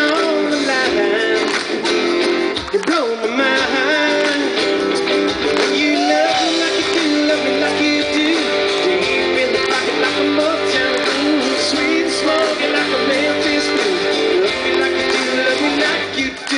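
A live band playing an upbeat pop-rock song, led by a strummed acoustic guitar, with a melody line bending up and down in pitch over it.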